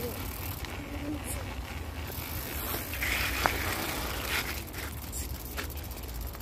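Child's bicycle rolling along a dirt road: a steady noise of tyres on the gravelly surface over a low rumble, with scattered small clicks and knocks.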